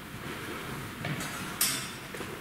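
Steel swords meeting in a bind: a short, sharp metallic scrape of blade on blade about a second and a half in, with softer movement sounds before it.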